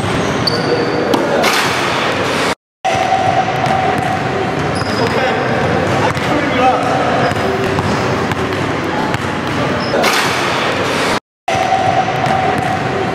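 A basketball bouncing on a hardwood gym floor over steady background noise and voices. The sound cuts out completely twice, briefly, where the takes are edited together.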